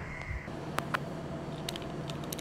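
Steady low room hum with two light clicks a little under a second in and a few fainter ticks near the end, as the phone camera is handled and moved.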